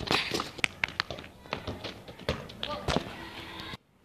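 A football being kicked and quick footsteps scuffing on gritty asphalt, an irregular run of sharp taps over about three seconds, cut off suddenly near the end.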